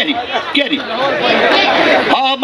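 Several men's voices talking at once, the speech overlapping and unclear.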